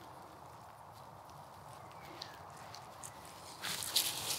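Faint rustling of grass stems being handled on the ground, rising near the end into a louder, crisp rustle as a bunch of cut grass is gathered up in the hands.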